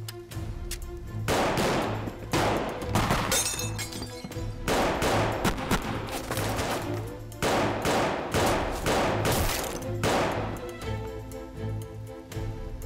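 Film gunfight: pistol shots and bullet impacts in quick clusters of three to five, starting about a second in and stopping shortly before the end. Under them runs a tense dramatic score with a pulsing low beat.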